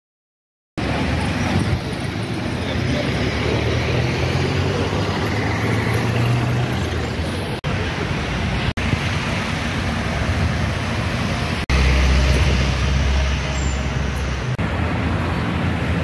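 Street traffic noise: car engines and tyres on a town road, beginning abruptly about a second in and broken by a few brief cuts. Near the end a deeper rumble swells for a couple of seconds.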